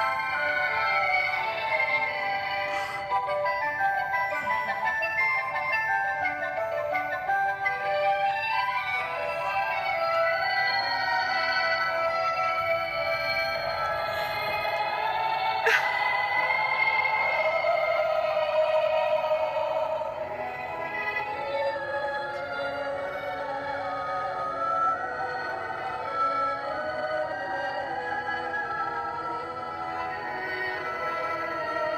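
Light-up snow globe playing a melody through its small built-in speaker, with thin, tinny sound and little bass. A single sharp click about halfway through.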